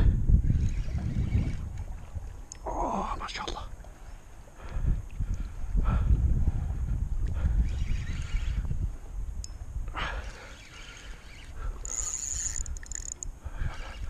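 Low, uneven rumble of wind on the microphone while a fish is fought on a spinning rod, with a few short vocal sounds from the angler and a brief high-pitched buzz about twelve seconds in.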